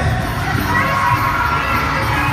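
Large arena crowd screaming and cheering: many high-pitched voices at once, loud and unbroken.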